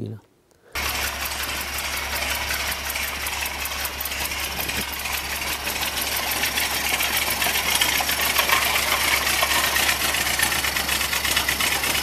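Ford Model T four-cylinder engine running with a fast, even beat as the vehicle drives slowly. The sound cuts in abruptly about a second in.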